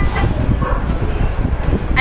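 A dog barking faintly a couple of times over a steady low rumble of background noise.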